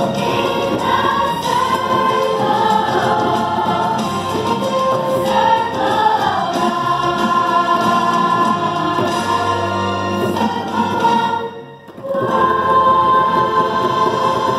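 A large cast of young performers singing together as a choir. The singing dips briefly about twelve seconds in, then starts again.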